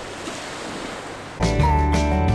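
Steady outdoor hiss of wind and sea. About one and a half seconds in, background music starts abruptly with sustained notes over a bass line and becomes the loudest sound.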